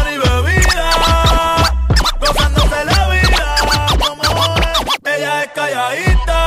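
Reggaeton DJ mix with turntable scratching over the beat and sweeping, gliding sounds. The bass drops out briefly about two seconds in and again near the end, as in a DJ transition.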